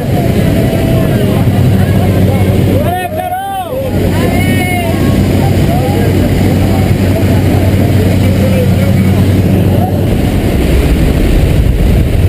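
Light aircraft engine droning steadily as heard inside the cabin of a skydiving jump plane in flight. About ten seconds in, the low rumble grows louder and rougher as the roll-up jump door is opened and wind rushes in.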